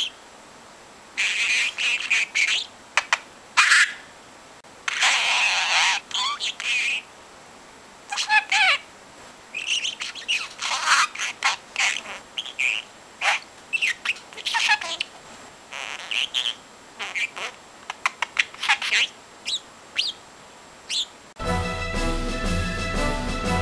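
Young budgerigar chattering and warbling in repeated short bursts of chirps and squeaks with brief pauses between them. Music begins just before the end.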